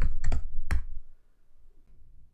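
Typing on a computer keyboard: a quick run of keystrokes in the first second, the last one the hardest.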